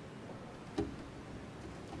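Quiet ambience of a large church with a seated congregation waiting, over a low hum. A single sharp knock comes about a second in.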